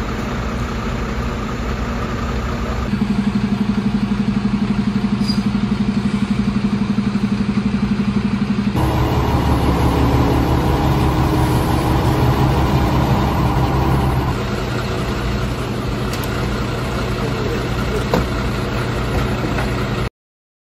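Fire trucks' diesel engines idling steadily, a continuous low rumble that changes abruptly in pitch and loudness three times.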